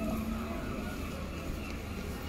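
Busy street ambience: a steady low rumble with no single sound standing out.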